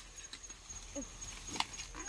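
Scattered rustles and crackles of dry corn stalks and leaves being handled while ears of corn are picked, the sharpest about one and a half seconds in. A faint, steady, high insect trill sounds throughout.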